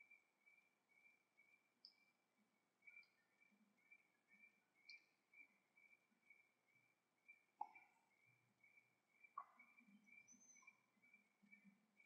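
Near silence: faint room tone with a faint steady high whine and a few soft, scattered clicks.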